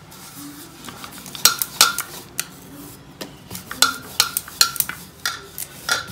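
Wooden rolling pin working a disc of stiff dough on a marble rolling board, with a soft rolling rub broken by a dozen or so irregular sharp clacks and knocks of wood against stone.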